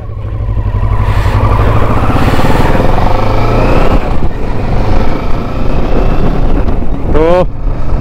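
Kawasaki Versys 650's parallel-twin engine pulling away and gaining speed, growing louder over the first second and rising slightly in pitch, heard from the rider's seat.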